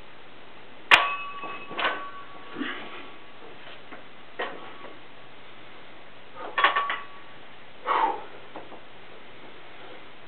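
Iron plates on a loaded barbell clanking and ringing as the bar is handled between one-arm snatch reps. There is a sharp clank about a second in, lighter knocks after it, and a quick cluster of clanks near seven seconds.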